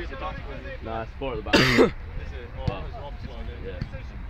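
A loud, harsh cough close to the microphone about one and a half seconds in, over players' voices calling on the pitch. A single sharp knock follows about a second later.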